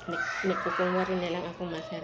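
A dog barking in a rapid series of short barks, about six or seven in under two seconds.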